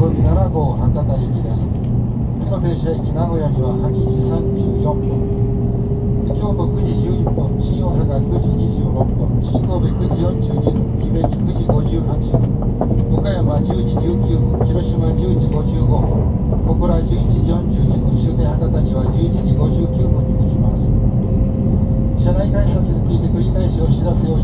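Shinkansen bullet train running at low speed, heard from inside the passenger car: a steady low rumble with a whine that rises slowly in pitch as the train accelerates.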